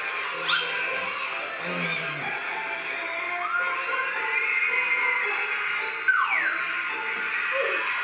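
Background music with gliding tones, one falling sharply about six seconds in.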